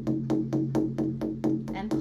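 Frame drum played with fast, even ka strokes, ring-finger taps on the inside ring near the top of the drum, about seven or eight strokes a second.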